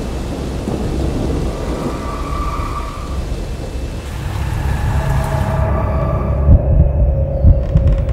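Heavy rain pouring with low rolling thunder. The rain cuts off about five and a half seconds in, leaving a deep rumble with heavy low thuds and a faint held tone.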